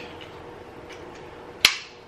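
Quiet room tone, then one sharp click about one and a half seconds in.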